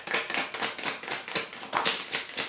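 A tarot deck being shuffled and handled in the hand: a rapid run of card clicks, several a second, with a card drawn and laid on the spread.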